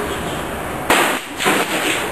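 Cold Steel Kukri machete striking and cutting through a hanging plastic milk jug: a sharp whack about a second in, followed by a second, smaller burst of sound just after.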